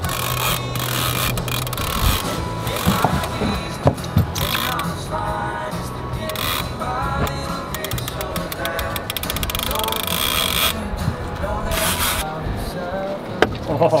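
Background music, with a few sharp clicks about four seconds in and near the end.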